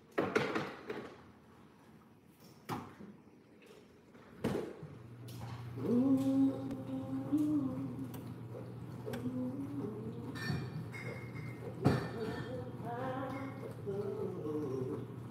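Kitchen clatter: a few sharp knocks of things being set down, then a steady low hum of an appliance starts about five seconds in and keeps going. Over the hum a person hums a few held notes.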